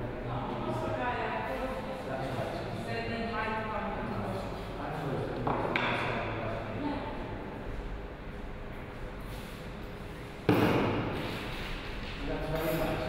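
Indistinct voices talking in a large room, with one sudden loud thump near the end that dies away over about a second.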